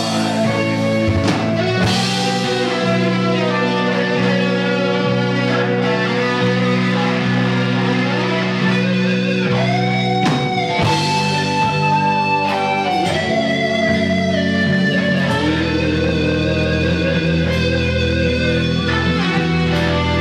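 Live rock band playing: electric guitars over drums and bass, with a deeper bass line coming in about three-quarters of the way through.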